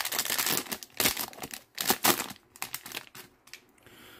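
Plastic wrapper of a baseball card pack crinkling and tearing as it is ripped open by hand, in irregular crackles that fade after about two seconds.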